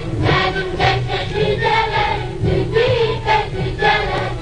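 A choir singing an Azerbaijani folk children's song over instrumental accompaniment, with a continuous melody of short sung notes.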